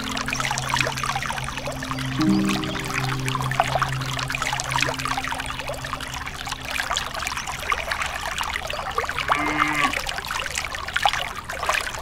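A thin stream of water pouring and splashing into a small pool from a miniature hand pump's spout, over background music with held low notes that fade out about seven seconds in.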